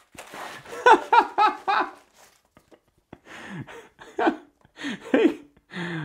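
A man laughing: a quick run of short laughs about a second in, then a few quieter ones near the end.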